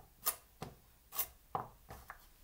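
Large cook's knife cutting through carrots onto a chopping board: about five separate knife strikes, unevenly spaced, as the ends of the carrots are cut off.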